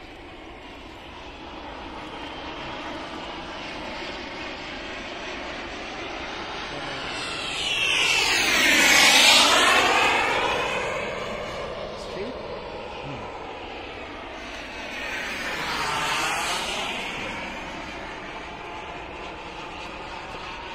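A radio-controlled L-39 model jet's SW190 turbine makes two fly-bys. The first is loudest about nine seconds in, with the pitch sweeping down as it passes; a weaker second pass comes around sixteen seconds in.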